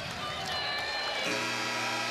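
Arena crowd noise, then about a second in the basketball arena's end-of-game horn starts: a steady low buzzing tone that holds without a break, marking the game clock running out.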